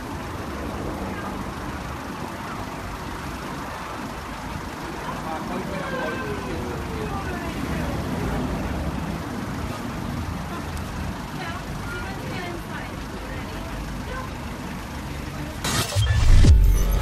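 Street ambience: steady traffic rumble with indistinct voices of people nearby. A sudden loud whoosh comes right at the end.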